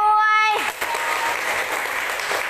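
A woman's voice holding one drawn-out note for about half a second, then a small audience clapping.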